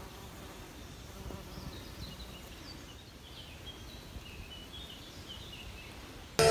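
Birds chirping in short, high, scattered notes over a low steady hum of outdoor ambience.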